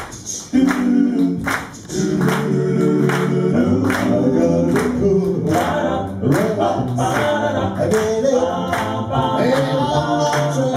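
Male a cappella group singing close harmonies into microphones, with a steady beat of sharp clicks about twice a second. There is a brief dip in the singing near the start.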